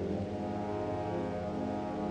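A low, steady droning tone, a sustained synth drone opening the track, held without any beat.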